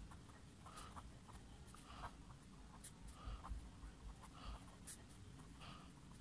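Faint scratching of a pen writing on paper: a string of short, irregular strokes.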